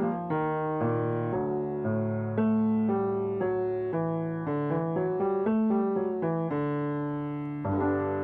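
Yamaha piano playing a quick agility-exercise pattern: runs of single notes stepping up and down over held bass notes, with a fresh chord struck near the end.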